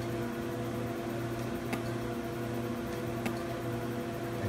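Sciton IPL system running with a steady machine hum, and two or three sharp clicks about a second and a half apart as the handpiece fires its light pulses over the skin.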